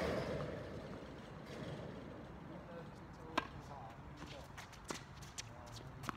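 Tennis ball being struck by racquets and bouncing on a hard court during a doubles rally: a few sharp separate pops, the loudest about three and a half seconds in, over faint voices and outdoor background.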